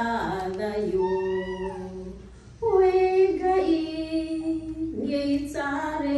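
A woman singing a Kikuyu gospel song into a handheld microphone, holding long notes with slides between them. She breaks off briefly a little over two seconds in and comes back in louder.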